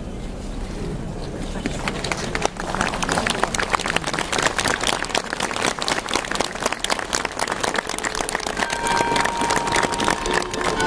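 A crowd clapping, starting about two seconds in and growing to a dense, steady patter, with voices among them; near the end a few steady ringing tones come in over it.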